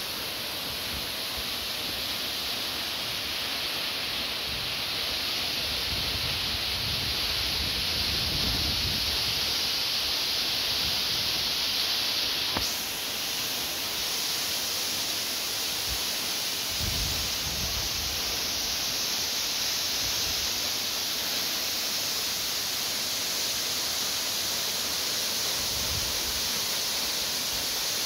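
Steady rushing hiss of falling water from Nan'an Waterfall, a 50 m cascade, with a few low rumbles underneath.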